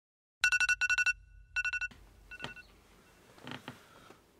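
An electronic alarm beeping in quick pulsed groups, three bursts of rapid beeps that stop abruptly, then one short beep. Soft rustling follows near the end.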